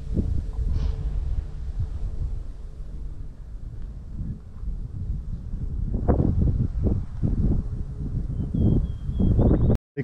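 Wind buffeting the microphone in a 15 to 20 mph breeze: a steady low rumble that surges in gusts, louder in the second half, cutting out briefly near the end.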